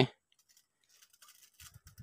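Near silence with a few faint, short clicks and light taps starting about a second in.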